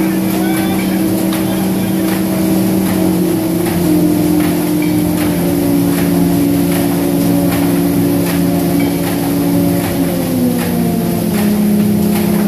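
A corrugated-cardboard sheet cutter and stacker line running: a steady machine hum of several motor tones that shift in pitch now and then, with light regular knocks about every two-thirds of a second.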